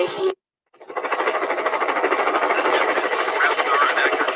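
Helicopter rotor chopping with a fast, even beat, played back from a video over the computer audio, starting about a second in after a short gap of silence. The last word of a voice is heard at the very start.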